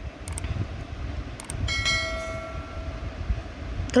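Low rumbling noise with a few sharp clicks. Near the middle, a steady horn-like chord of several held tones sounds for about a second and a half and then stops.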